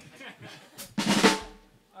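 A drum kit struck once about a second in, a sharp hit that rings out and fades within half a second. Faint chatter comes before it.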